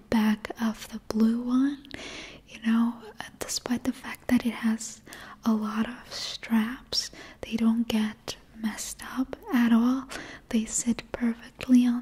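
A woman speaking softly in a whisper close to the microphone, in steady, continuous talk.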